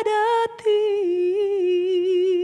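A woman singing unaccompanied, holding long notes with vibrato in a slow melody. She takes a quick breath about half a second in, and the line steps down in pitch about a second in.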